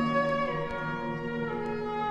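Music playing from a vinyl LP on a turntable: a softer passage of long, sustained chords.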